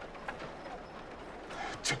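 A quiet pause in dialogue holding only faint, even background ambience; a man's voice begins to speak near the end.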